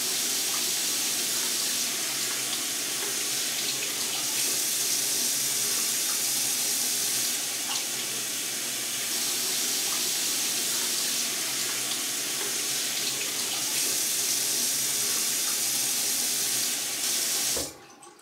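Single-lever chrome bathroom tap running in a steady stream into a sink, stopping abruptly near the end.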